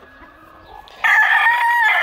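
Gamecock rooster crowing: one long, loud call that starts suddenly about a second in and holds a steady pitch.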